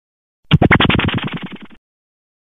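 A short sound effect for a logo animation: a quick run of rapid clicks, about a dozen a second, starting half a second in and fading out over a little more than a second before cutting off.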